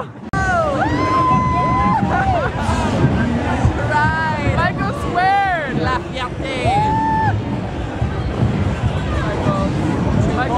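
Street parade crowd noise: a babble of many voices with people calling out and whooping in high, rising-and-falling shouts, over music.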